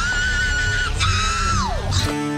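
Radio tuning whistle: two high squeals, each gliding up, holding steady, then sliding back down, the second starting about a second in, as a car radio is tuned between stations.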